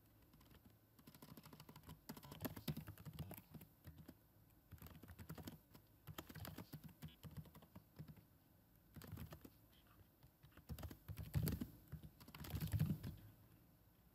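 Faint typing on a computer keyboard: quick runs of key clicks in bursts with short pauses, a few heavier strokes near the end.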